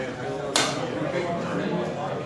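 Diners' chatter, many voices overlapping, with a single sharp clack about half a second in.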